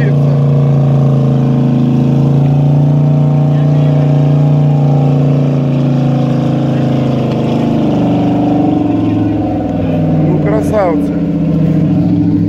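Off-road 4x4's engine held at high revs under load while it is driven through deep mud with its wheels spinning; the revs drop about eight seconds in. A man's shout is heard near the end.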